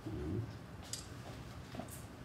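A short, soft, low murmur of a voice at the start, then a brief faint rustle about a second in, as a Bible page is turned at the lectern.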